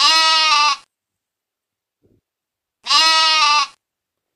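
Goat bleating twice: two quavering calls, each under a second long, about three seconds apart.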